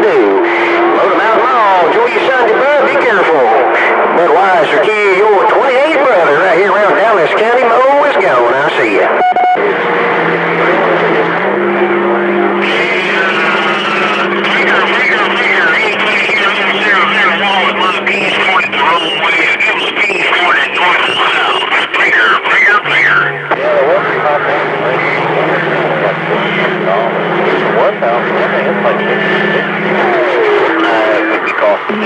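CB radio receiving distant stations on channel 28: several garbled voices talk over one another through the set's speaker. Steady low heterodyne whistles run under them and shift pitch a few times.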